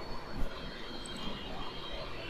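Faint, steady background noise between words: room tone of low hum and hiss, with no distinct event standing out.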